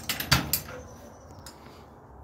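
A few short knocks and clicks in the first half second, then faint steady room noise.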